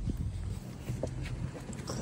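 A few footsteps on pavement, over low rumble from the handheld phone being moved and wind on its microphone.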